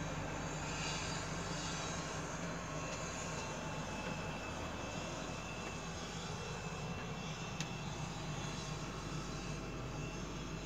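Steady low machinery hum with a faint high-pitched whine in a tower crane's cab, and a single sharp click about seven and a half seconds in.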